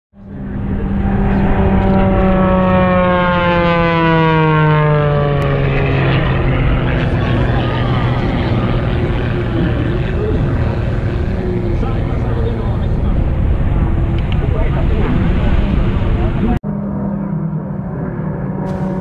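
Red Bull Air Race plane's six-cylinder piston engine and propeller on a low pass: its note drops steadily in pitch as it goes by, then trails into a rough, noisy rumble. Near the end the sound cuts suddenly to another steady engine drone.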